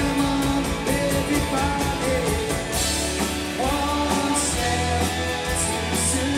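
Britpop-style indie rock band playing live: electric and acoustic guitars and drums with cymbals, under a lead vocal singing the melody.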